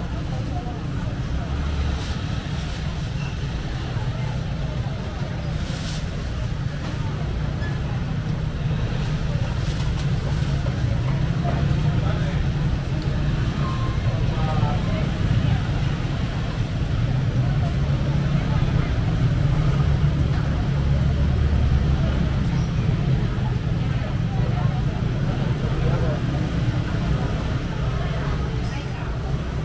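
Busy market background: a steady low rumble under faint, indistinct voices, with a few short knocks.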